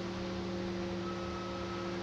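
Soft background ambient music: steady held drone tones over a hiss, with a higher held tone coming in about halfway through.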